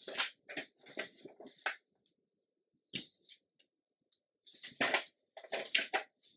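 Sheets of old vintage paper rustling and sliding as they are lifted and laid down by hand, in short crackly bursts with a brief quiet pause partway through.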